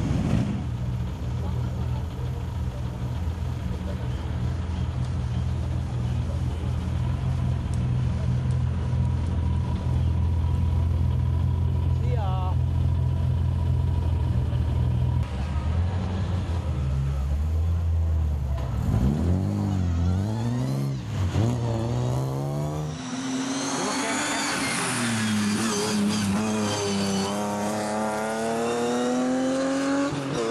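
Rally car engine running steadily at low revs, then revving and accelerating from about halfway, its pitch climbing and dropping repeatedly as it goes through the gears, hardest in the last third.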